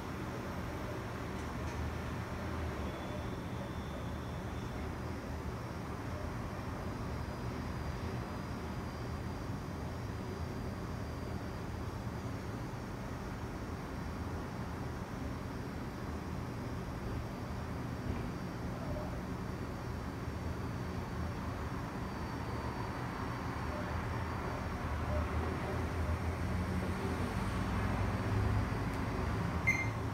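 Steady hum of a desktop PC's cooling fans running just after power-on, while the machine waits at a dark screen on its first start with a new CPU fitted. The hum grows a little louder in the last few seconds.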